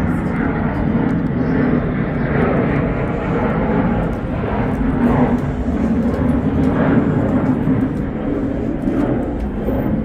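Jet aircraft passing overhead: a loud, steady rumble that carries on throughout.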